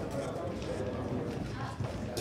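Skipping rope slapping the canvas of a boxing ring with quick light footfalls, a rapid run of clicks and taps, under background chatter.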